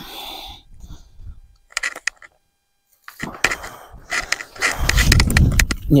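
A long-handled garden tool digging into a straw-mulched bed of soil: crunching and rustling of earth and dry straw, heaviest in the last two seconds as a clod of soil is lifted.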